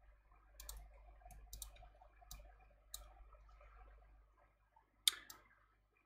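Faint, irregular computer mouse clicks, several in quick pairs, with the loudest click about five seconds in.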